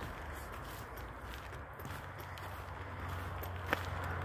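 Hiker's footsteps on a dirt forest trail, with one sharp click near the end.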